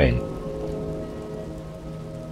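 Soft ambient background music: a steady held chord with a faint hiss-like texture beneath it.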